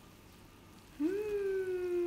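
A single long held voiced sound, like a hum, starts about a second in, rises briefly and then slides slowly down in pitch for about a second and a half. Before it there is only faint stirring of thick batter with a whisk.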